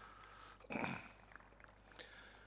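A man's brief grunt-like vocal sound into a podium microphone, once, about three quarters of a second in, over faint room tone.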